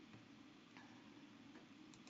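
Near silence: faint room tone with a low hum and a couple of faint clicks.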